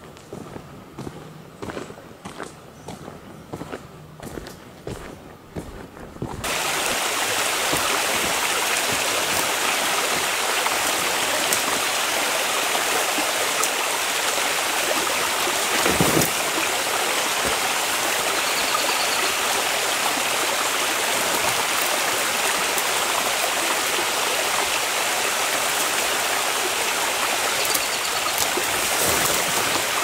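Footsteps on a gravel road for about six seconds, then a sudden cut to the steady rush of a forest creek, which carries on to the end with a single thump about midway.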